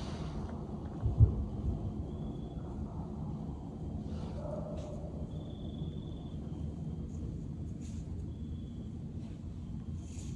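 Night-time outdoor recording with a steady low rumble, a single low thump about a second in, and a few faint, thin, high held tones later on.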